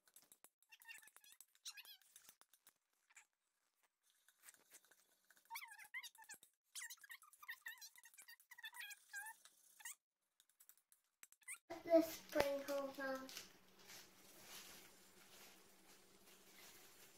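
Fork whisking Angel Delight mix in a plastic mixing bowl: faint scraping and ticking of the fork against the bowl, with short squeaks through the middle. A brief voice comes near the end.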